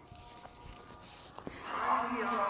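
A muezzin's chanted voice over the mosque loudspeakers, calling the dawn adhan: faint held tones at first, then a loud long held note enters about one and a half seconds in.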